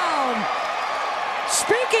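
Football stadium crowd noise, steady beneath the TV commentary, in reaction to a long touchdown catch. A commentator's voice falls away in the first half-second and comes back near the end.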